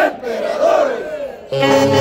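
In a short break in the music, a drawn-out festive yell that rises and falls in pitch; a saxophone band comes back in sharply about one and a half seconds in.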